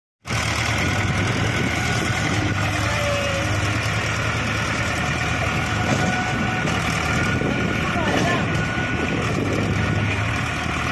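Mahindra Arjun 555 tractor's 50 hp diesel engine running steadily under heavy load while it hauls a fully loaded soil trolley.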